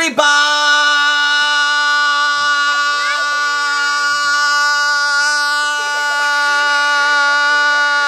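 A loud, single held note at one unchanging pitch, rich in overtones, that begins abruptly and runs on steadily: an edited-in comedy sound effect. Voices are faint beneath it.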